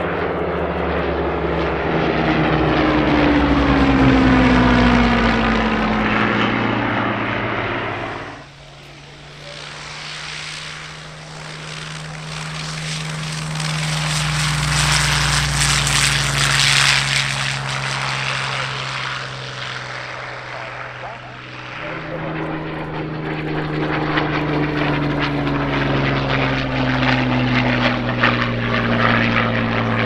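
Rolls-Royce Merlin V12 engines of Second World War fighters passing low, the engine note falling in pitch as they go by. After a cut, a Hawker Hurricane's Merlin runs steadily as the plane rolls across a grass field, swelling and then fading. After another cut, a second fighter passes overhead with its engine note again falling in pitch.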